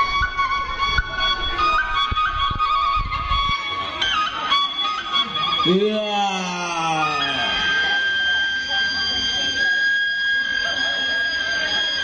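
Live traditional Indonesian music: a bamboo suling flute plays a stepping melody over drum beats, and the beats stop about three and a half seconds in. Around six seconds in a voice gives a long falling call, and then the flute holds one long high note.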